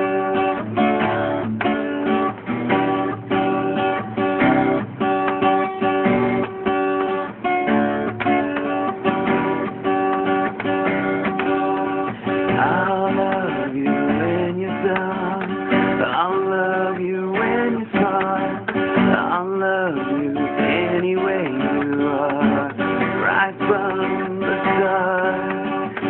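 Acoustic guitar strummed in a steady rhythm: the instrumental introduction before the vocals of a song come in.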